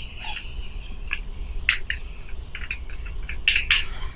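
Light, irregular clicks and scrapes of plastic parts as the thumbscrews of a PolarPro Katana handheld drone tray are screwed back together by hand, about a dozen small ticks in all.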